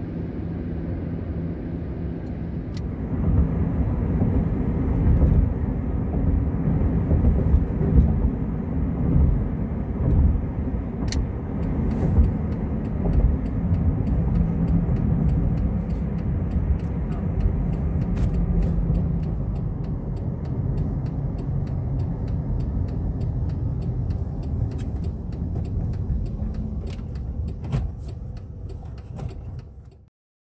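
Car cabin road noise while driving on wet pavement: a steady low rumble of tyres and engine, getting louder about three seconds in, with faint scattered ticks through the second half.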